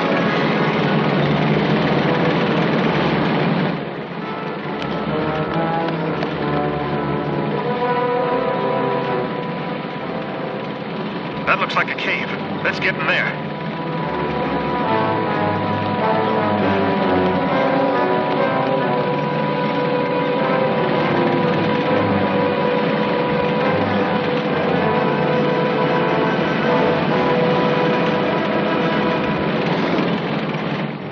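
An orchestral action score plays throughout, with a vehicle's engine sound mixed under it, heaviest in the first few seconds. A quick cluster of sharp, noisy bursts comes about twelve seconds in.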